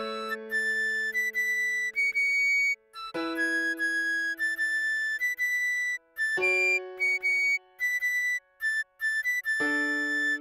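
Soprano recorder playing a melody of short, separated high notes over piano chords struck about every three seconds, each chord ringing and fading before the next.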